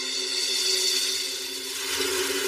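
Background music: a held low chord under a hissing cymbal-like swell that builds, peaks early, then fades away.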